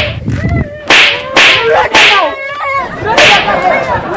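Five sharp lashing strikes of a beating, about a second apart, with a man's wailing cries between them.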